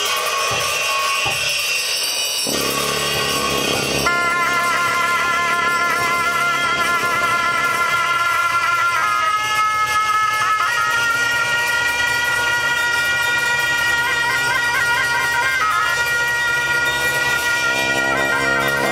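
Tibetan Buddhist ritual music: a pair of reed shawms (gyaling) playing a wavering, ornamented melody over a low steady drone. The melody enters about four seconds in and carries on at an even level.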